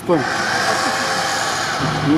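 Steady engine noise from off-road 4x4s stuck in deep mud, with a low hum coming in near the end.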